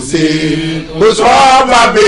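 A man's voice chanting a slow, wordless melody in long held notes, louder and higher from about halfway through.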